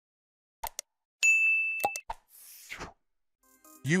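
Subscribe-button animation sound effects: a few short mouse-click sounds, then a bright notification ding held for nearly a second, followed by a short soft swish. A narrator's voice starts right at the end.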